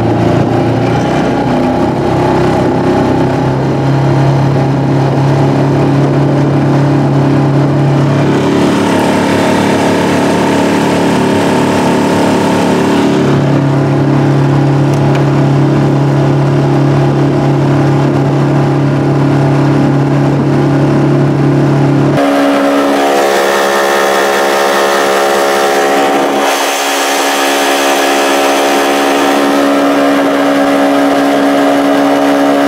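Tohatsu 5 hp four-stroke outboard motor running steadily at cruising throttle, pushing a small aluminum boat, with water and wind noise under it. Its tone shifts abruptly about two-thirds of the way through.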